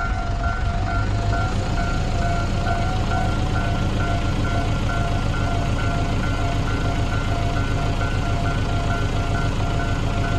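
Japanese railway level-crossing alarm bell ringing in its standard electronic tone: an evenly repeating two-tone ding that goes on unbroken. A low vehicle engine rumble runs beneath it.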